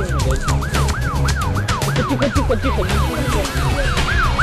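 A siren in a fast yelp, about four quick rising-and-falling sweeps a second, over music with a heavy low beat.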